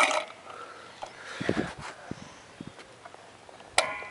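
Quiet handling sounds as a fish in a weigh sling is hung on a dial spring scale: faint rustles and small knocks, a few short low sounds about a second and a half in, and a sharp click near the end.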